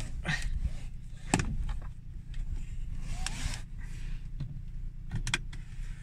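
Seatbelt being drawn out and buckled in a parked car: a soft sliding rustle of the webbing and a few sharp clicks, the sharpest about a second in and a cluster near the end. Underneath, the car's engine idles with a steady low rumble.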